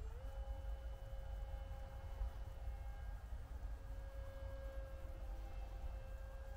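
Distant drone of an RC paramotor's motor and propeller: the pitch rises quickly right at the start as the throttle goes up, then holds steady with a slight waver. Low wind rumble on the microphone underneath.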